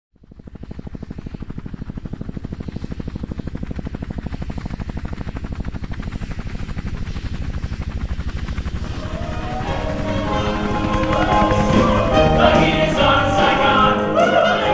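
Helicopter rotor chop, a steady fast pulse, with orchestral music and voices swelling in over it from about nine seconds in and growing louder.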